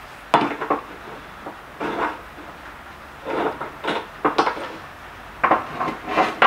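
Steel hinge pieces and steel angle clinking and knocking together as they are handled and set down: several separate metal knocks, some with a short ring.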